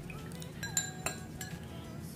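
Metal spoon clinking against a small glass cup of juice: a few light clinks around the middle, each ringing briefly.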